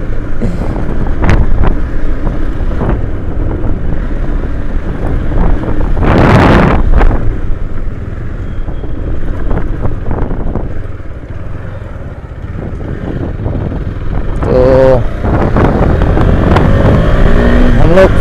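KTM motorcycle engine running while riding over a rough dirt track, with wind buffeting the microphone in a loud gust about six seconds in.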